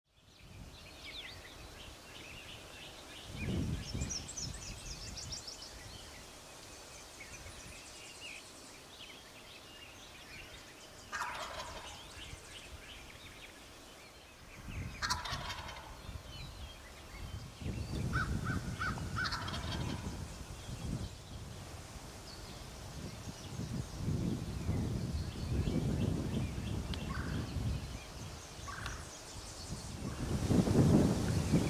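Wild turkey tom gobbling close by, short rattling gobbles about eleven seconds in and loudest about fifteen seconds in. High songbird chirping runs under it, and bouts of low rumbling noise come and go in the second half.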